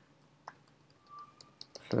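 A few faint, scattered keystroke clicks on a computer keyboard while code is being typed.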